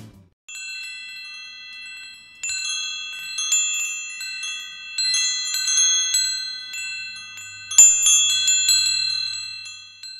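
Wind chimes ringing, many clear high tones overlapping and fading. They enter softly about half a second in, grow fuller from about two and a half seconds, and are struck loudest near eight seconds.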